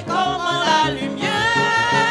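A hymn sung by a solo voice with vibrato over instrumental accompaniment with a low bass line. One note is held through the second half.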